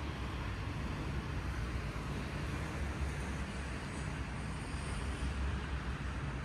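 Steady outdoor background noise: a constant low rumble with a softer even hiss above it and no distinct events.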